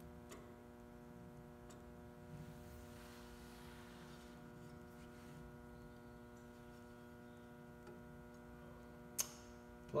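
Steady electrical mains hum with a few faint ticks, and one sharp click about a second before the end.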